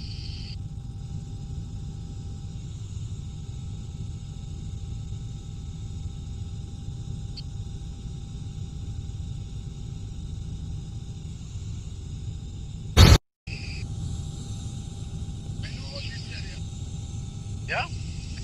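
Steady low rumble of a small helicopter in flight, heard inside the cabin. About 13 seconds in there is one loud sharp click, followed by a short cut-out of the sound.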